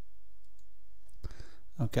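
Computer mouse clicking: faint clicks about half a second in, then a short, louder burst of noise a little over a second in. A man's spoken word begins near the end.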